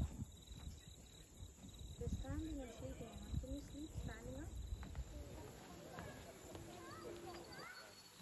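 Faint voices of people talking some way off over a low, fluctuating outdoor rumble, with a few short rising chirps near the end.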